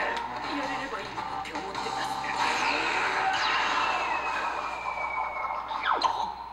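Anime episode soundtrack playing: music under Japanese-language dialogue, with a long high tone sliding slowly down in the second half.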